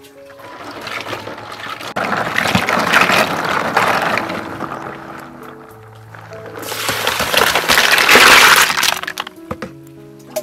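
Snails and water in a plastic basin splashing, then poured into a plastic colander: two long stretches of sloshing and pouring, the second, from about two-thirds in, the louder. Background music plays throughout.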